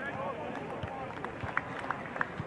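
Live sound of a rugby match in open play: distant shouting voices, with several short, sharp knocks in the second half.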